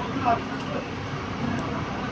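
Several people calling out and talking in short bursts, with one loud call just after the start, over a steady low engine rumble.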